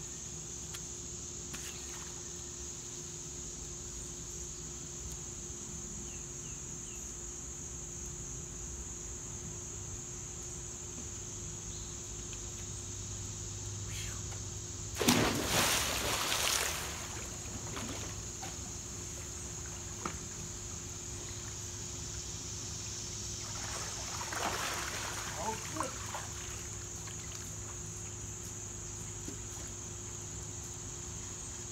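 A person jumping into a swimming pool: one big splash about halfway through, followed by about two seconds of water crashing and sloshing. Crickets chirr steadily throughout, and there is a softer burst of noise later on.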